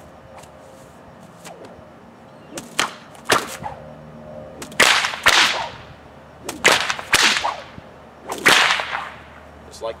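A bullwhip cracking in a fast figure-eight, a combination of cattleman's and underhand cracks: about seven sharp cracks, mostly in pairs about half a second apart, starting about two and a half seconds in. Each crack comes with a swish of the whip through the air.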